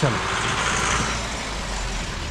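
A vehicle driving past on the street, a rush of engine and tyre noise over a low rumble, loudest in the first second and a half and then fading.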